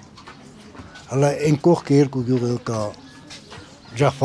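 A man's voice speaking for about two seconds in the middle, with a low background hum of outdoor noise before and after.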